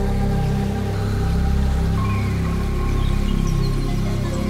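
Ambient music from a Eurorack modular synthesizer: a Disting Ex wavetable pad holds sustained notes over a deep Chainsaw bass drone that swells and ebbs. A new held note enters about halfway through, with faint high glints near the end.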